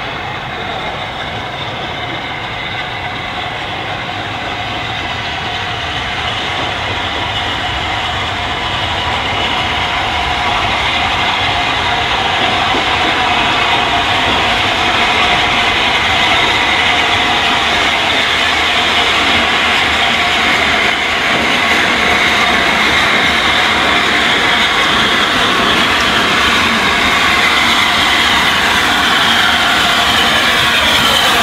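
A2 pacific steam locomotive 60532 Blue Peter and its train of carriages rolling slowly into a station. It grows steadily louder as it draws near and reaches the listener.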